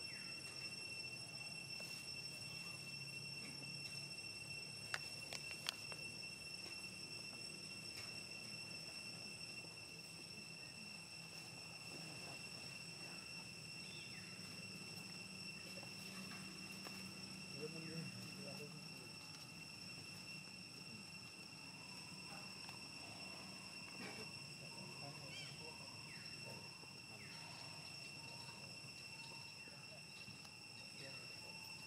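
Faint, steady high-pitched insect drone, with two sharp clicks about five seconds in.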